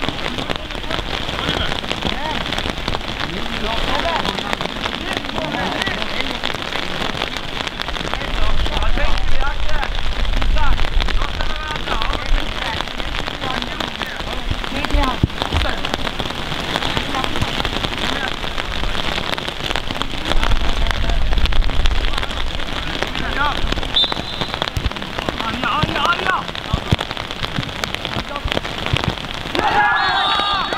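Outdoor football pitch ambience: a steady noisy hiss with gusts of wind rumbling on the microphone, and distant shouts and calls from players on the field.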